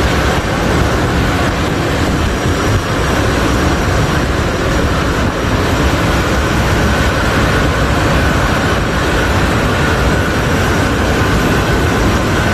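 Jet aircraft engines running: a loud, steady rush of noise with a faint high whine above it.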